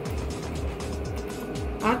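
Excel electric sewing machine running steadily as fabric is stitched, under background music.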